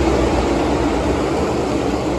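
A pack of NASCAR Cup Series stock cars passing the grandstand at racing speed, their V8 engines merging into one loud, dense drone that eases slightly near the end.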